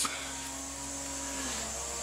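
Cast-iron Briggs & Stratton 14 hp single-cylinder engine running steadily, with a slight drop in pitch about one and a half seconds in as the throttle and governor linkage move.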